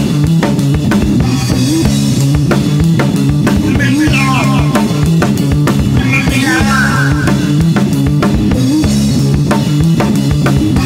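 Music: a drum kit keeps a steady beat under a repeating bass line, with a lead melody of bending notes over the top.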